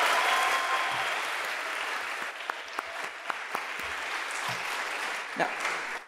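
Audience applauding in a hall, loudest at first and slowly dying away over about five seconds.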